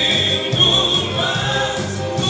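Live music: a male vocalist singing into a microphone over band accompaniment, holding a long note in the first part.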